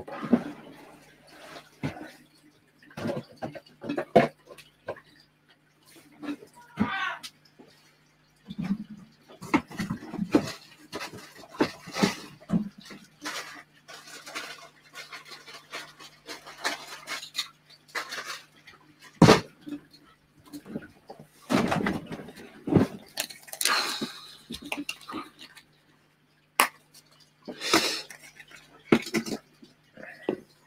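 Irregular knocks, clatter and rustling of small containers and objects being moved on shelves while someone searches for a cup. A low steady hum runs underneath.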